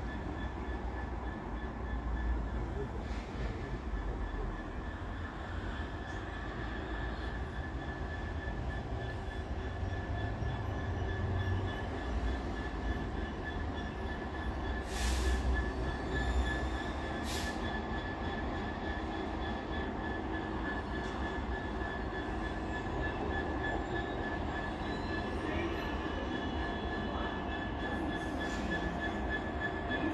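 Class 66 diesel locomotive's two-stroke V12 engine running with a steady low rumble at the head of a container freight train, over a steady high-pitched whine. There are two short hisses about halfway through.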